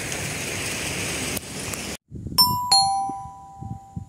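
Steady outdoor background hiss that cuts off suddenly halfway through. It is followed by a two-note ding-dong chime sound effect, a higher note then a lower one, each ringing out and fading.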